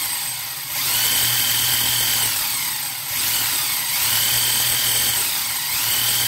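An RC car's Traxxas brushed electric motor and drivetrain running on a 2S 7.4 V LiPo with the wheels spinning free: a whine rises as the throttle opens, holds steady for about a second, then falls away as it lets off. This repeats about every two and a half seconds, a little over two bursts in all. The owner reckons it has a little more power than on the NiMH pack.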